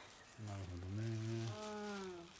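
A woman's drawn-out, strained hum, starting about half a second in and trailing off with a falling pitch near the end, made with effort while she pulls a deep dandelion root out of the ground by hand.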